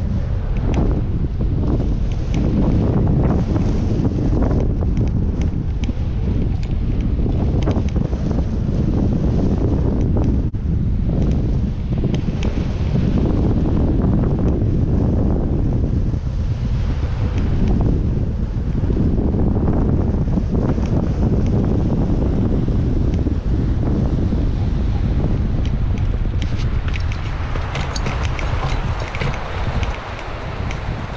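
Wind rushing over the camera microphone on a hang glider in flight: a loud, steady, buffeting rumble. It eases near the end as the glider slows to land.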